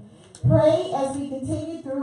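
A woman's voice amplified through a microphone in a drawn-out, sing-song delivery, starting after a short pause about half a second in.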